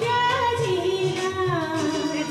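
Woman singing a Hindi song into a handheld microphone, her melody gliding up and down over instrumental accompaniment with held low notes.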